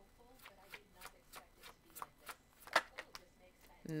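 A deck of paper word cards being shuffled by hand: a steady run of short flicks, about three a second, one louder than the rest about three seconds in.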